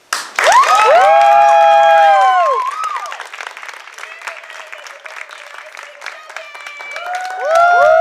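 Audience applause and cheering: several high, held whoops rising and falling together at the start, then steady clapping, with a second burst of whoops near the end.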